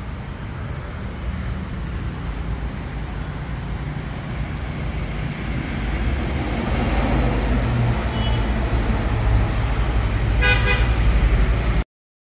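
Road traffic rumbling, growing steadily louder, with a vehicle horn giving a short toot near the end.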